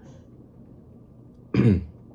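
A man clears his throat once, briefly, about one and a half seconds in, over faint room tone.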